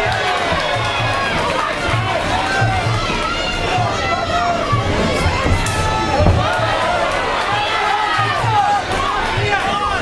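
Muay Thai ring music (sarama): a wavering, ornamented wind-instrument melody over a steady drum beat of about two beats a second, with a crowd shouting over it.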